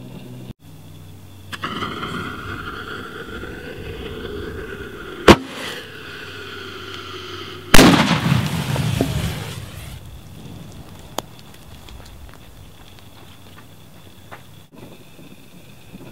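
A consumer firework shell blowing up inside a mortar rack in a deliberate destructive test: a sharp crack about five seconds in, then a louder blast a couple of seconds later that dies away over about two seconds.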